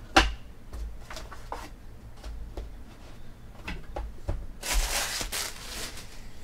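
Trading cards and foil card packs being handled: a sharp knock at the start, a few lighter clicks and taps, then about a second of dense rustling near the end as cards are shuffled or a wrapper is crinkled.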